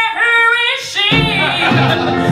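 A woman singing a country-style show tune, her voice alone and bending in pitch for about a second, then the live band comes back in under her.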